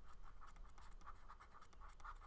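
Faint scratching of a stylus writing on a tablet surface: a quick run of short, irregular pen strokes.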